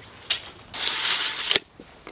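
Steel tape measure retracting after a reading: a click, then the blade rattles back into its case for almost a second and stops with a snap.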